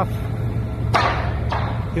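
Steady low drone of heavy diesel equipment at work, with one sudden sharp burst of noise about a second in that fades away over half a second.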